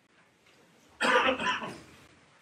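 A man's short cough about a second in, picked up loudly by a handheld microphone.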